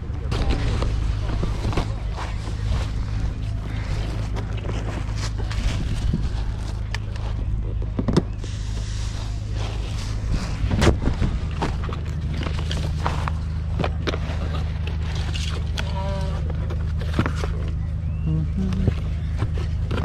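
A steady low hum runs throughout under faint distant voices, broken by a few brief knocks.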